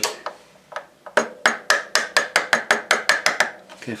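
Light metal-on-metal hammer taps, a few scattered at first and then a quick run of about a dozen at four to five a second, drifting a Triumph Bonneville's rear foot-peg fitting out of its mount.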